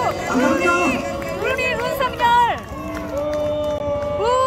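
An amplified voice shouting long, drawn-out calls through a public-address loudspeaker system, each syllable held for up to a second before falling away.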